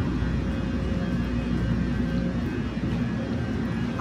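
Hard plastic wheels of a rolling suitcase rumbling steadily over the stone-tiled platform of a high-speed rail station, with a faint steady hum underneath.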